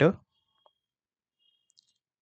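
The tail of a spoken word, then near silence with one faint short click about two-thirds of a second in.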